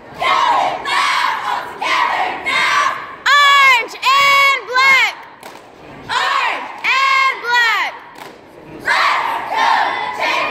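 Cheerleading squad shouting a cheer in unison: a rhythmic run of loud group shouts, each word pitched up and then dropping. The longest, loudest calls come about three to five seconds in.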